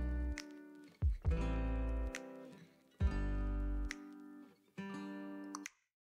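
Acoustic guitar music: single strummed chords, each ringing for about a second and fading, with brief silences between them.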